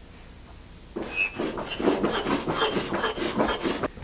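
Foot pump pushing air through a corrugated hose into an inflatable kayak seat: a run of breathy whooshes that starts about a second in, as the seat is pumped up firm.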